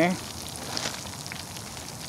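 Breaded perch fillets deep-frying in hot oil in a cast iron Dutch oven: a steady bubbling sizzle with faint crackles, from fresh fillets just dropped into the oil.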